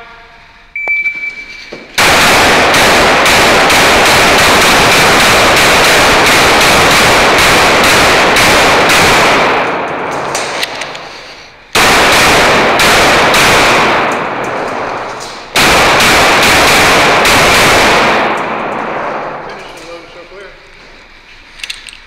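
A shot-timer beep about a second in, then a 9mm Glock pistol fired in fast strings at an indoor range. The shots come in three long runs separated by short pauses, with each shot ringing off the concrete walls.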